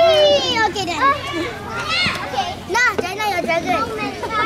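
Children's voices: several kids talking and calling out over one another in high-pitched, lively chatter.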